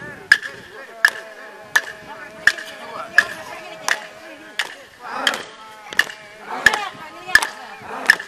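Wooden clapsticks struck in a steady beat, about three strokes every two seconds, each stroke ringing briefly. Voices chant with it, holding one note in the first half and joining in several at once in the second half.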